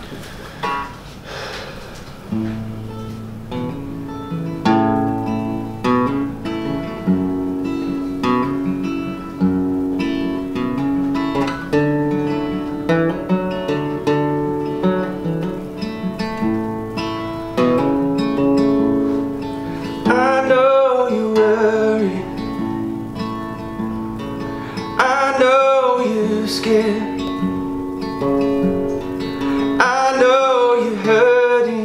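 Steel-string acoustic guitar playing a slow song intro, chords ringing out and changing every second or two. About twenty seconds in, a man's voice joins with short sung phrases.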